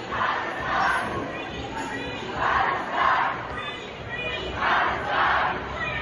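A large crowd in a street shouting together, rising in three loud swells about two seconds apart, like a chant repeated.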